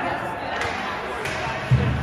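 Ice hockey game heard from the stands in a rink hall: spectators talking, a few light clacks of sticks on the puck, and one low thud near the end.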